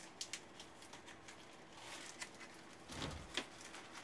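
Faint scattered clicks and rustling of pencils being rummaged through in a clear plastic pouch, with a soft bump about three seconds in.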